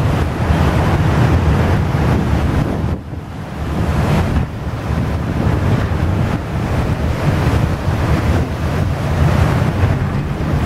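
Wind rushing over the microphone on a moving ship's deck, over a steady low rumble from the ship and the water churning through broken sea ice along its hull. The wind noise drops briefly about three seconds in.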